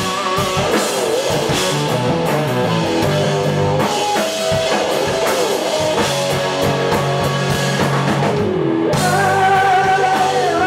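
Live rock band playing an instrumental passage on electric and acoustic guitars, bass guitar and drum kit. Near the end the cymbals drop out for a moment and the lead vocal comes back in.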